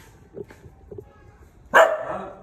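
A dog barks once, loudly and sharply, near the end, after a few faint short sounds.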